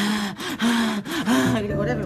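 A woman panting in short, choppy gasps, about three quick breaths with brief voiced moans that rise and fall in pitch between them: a deliberately exaggerated, staged imitation of sexual arousal.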